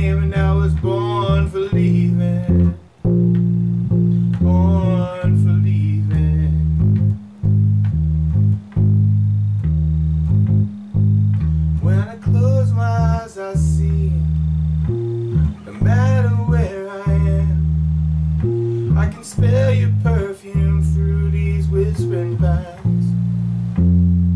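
Electric bass guitar playing a steady root-note line on Ab, Eb and Bb in E-flat major, along with a full country-band recording. The bass notes are long-held and change every second or two, and a wavering lead melody comes in and out above them.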